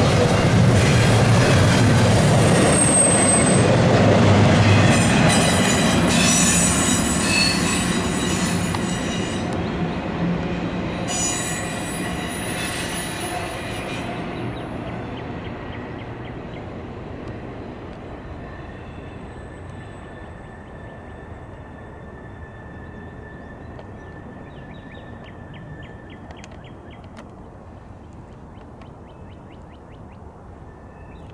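Double-stack intermodal freight cars rolling by on steel rails, wheels rumbling with high-pitched wheel squeal, loudest in the first few seconds. The sound then fades steadily as the tail of the train moves away.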